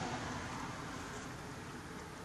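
Steady outdoor background noise, a hiss-like rush of distant traffic, growing slowly fainter, with no distinct sounds standing out.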